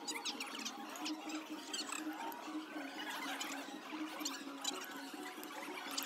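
Crispy fried batter crust of a tofu-and-egg tower crackling and crunching in many short, quick crackles as a knife and fork cut through it, with cutlery scraping against the plate.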